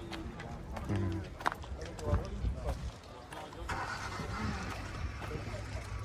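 Faint voices talking in the background, in short bits about one and two seconds in, with a brief stretch of noise in the middle.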